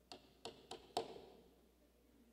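Four light taps in quick succession, the last the loudest with a short ring after it.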